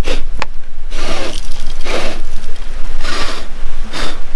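Metal detector being swept over bedrock, with four short scraping swishes about a second apart as it rubs the rock, over a steady low rumble.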